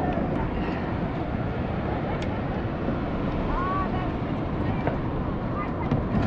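Steady rushing of wind buffeting the microphone, mixed with breaking surf on the beach.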